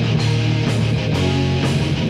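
Heavy metal band playing live: electric guitar over drums, with cymbal or drum hits cutting through a few times.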